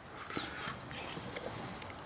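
Faint sounds of two brown bears moving about in a cage, with a light knock about a third of a second in and another faint one later as one bear swings a stick.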